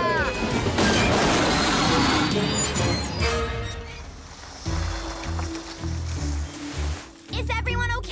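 Animated cartoon soundtrack: a loud burst of noise effect lasts about three seconds. Background music with a low bass line follows, and a character's voice comes in near the end.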